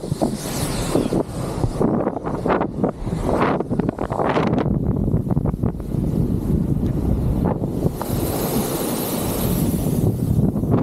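Wind buffeting the microphone over the steady rumble of a kite buggy's fat tyres rolling fast over hard-packed sand, with a hiss rising in the last couple of seconds.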